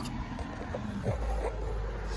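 A low steady rumble with faint, light handling noises over it.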